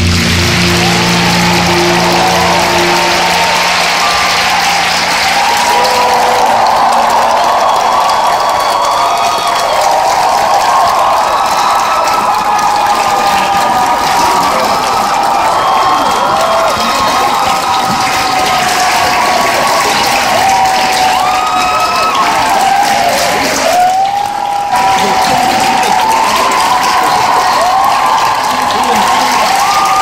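Large arena crowd applauding and cheering, many high voices calling out over steady clapping. The program music ends on a held chord in the first few seconds.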